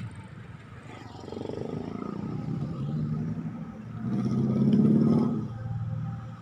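Road traffic passing: motor vehicle engines swell and fade twice, the louder pass about five seconds in.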